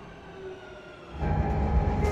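Madrid Metro electric train pulling into the station, a faint falling whine under the platform noise. About a second in the sound jumps abruptly to the loud, steady low rumble of the carriage running.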